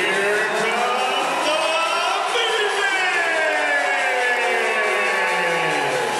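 Loud layered sound effect of several pitched tones sweeping up and down, sliding mostly downward over the seconds, of the kind played during a darkened-arena pregame introduction.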